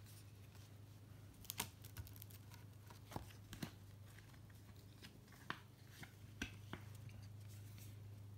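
Faint, scattered clicks and rustles of cardboard trading cards being handled by hand, with a clear plastic card holder picked up near the end, over a steady low hum.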